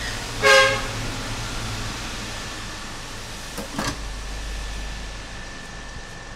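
Hot-air rework gun blowing steadily on an iPhone logic board while a small chip is being removed. A short horn toot about half a second in is the loudest sound, and two light clicks come a little before four seconds in.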